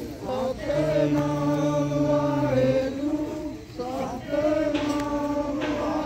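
A group of voices chanting a devotional hymn in long, held notes, phrase after phrase with short breaks between.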